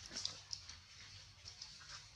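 Macaques making short, high squeaking calls, two sharp ones in the first half second, then fainter ones.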